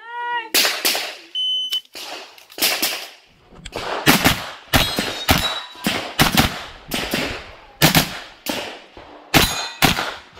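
An IPSC shot timer beeps once, a little over a second in. The 9mm blowback pistol-caliber carbine then fires rapid strings of shots with short pauses between them as the shooter engages the targets.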